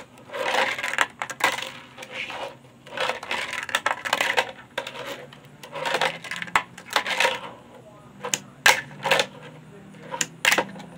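Tech Deck fingerboard rolling and clattering on a curved ramp: short bursts of small wheels rolling, with sharp clacks as the board's tail and wheels strike the ramp and table, and a few quick clicks near the end.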